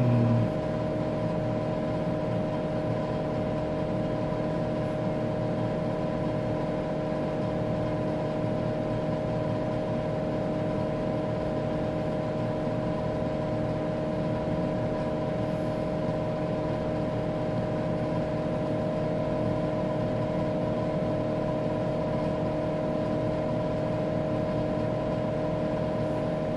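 Steady hum and fan noise of a running Tektronix 4054A vector graphics computer, several unchanging tones over a low whir.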